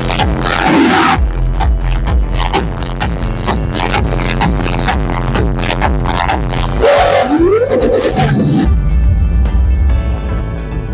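Loud electronic music with deep, heavy bass, played through a car audio system with speakers built into the trunk. The deep bass thins out for a moment a little after the middle and comes back strongly near the end.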